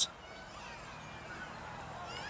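Quiet outdoor background with faint high chirps of distant birds.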